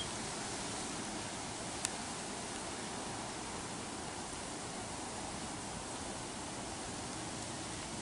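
Steady, even hiss of background noise, with one sharp click about two seconds in.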